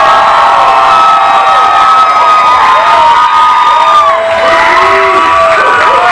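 Crowd cheering loudly, with several long high-pitched screams held and overlapping, over clapping.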